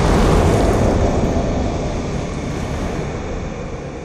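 Fire-effect sound for an animated logo: a loud, deep rumble of flames that dies away steadily.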